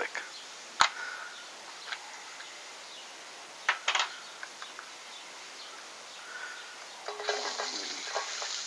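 Garlic dropping into hot oil in a wok and starting to sizzle about seven seconds in. Before that there are a few light clicks and taps, one sharp click about a second in.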